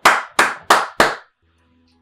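A man clapping his hands four times, about a third of a second apart, the claps stopping after about a second.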